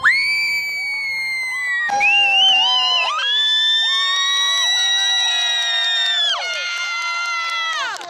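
Audience screaming and cheering at the end of a dance performance: several high-pitched voices hold long shrieks. A bigger wave of them swells about two seconds in and trails off near the end.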